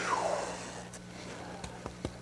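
Fan brush loaded with thick oil paint pulled down the canvas to lay in a tree trunk: a soft swish that falls in pitch over about half a second, then a few faint ticks.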